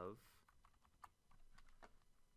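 A few faint, short clicks of computer keyboard keys in the second half, after the end of a spoken word.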